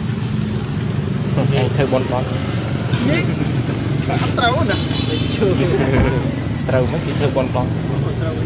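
Voices of people talking intermittently in the background, over a steady low hum.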